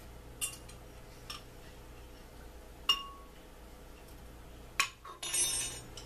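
Light hard clinks of metal or glass: several separate taps, the loudest about three seconds in ringing briefly, then a quick rattle of ringing clinks near the end.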